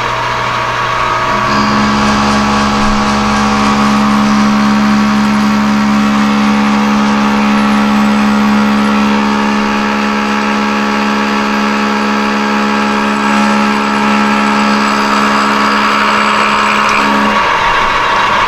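Metal lathe boring an interrupted cut inside the bore of a steel gear forging: the boring tool sings with a steady hum over the running lathe. The cut is interrupted because the bore was double cut, which makes the part defective. The tone starts about a second and a half in and stops just before the end.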